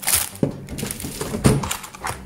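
Groceries being handled on a table: a plastic-wrapped pack of rice cakes crinkling and a few knocks as packages are moved and set down, the loudest about one and a half seconds in.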